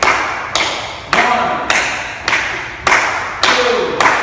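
Sharp hits keeping a steady beat for dance practice, a little under two a second, each ringing on in the hall's echo.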